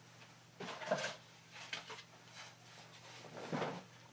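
A few soft, brief handling sounds, the loudest about a second in, as beading wire strung with crystal beads is moved across a bead mat. A faint steady hum runs underneath.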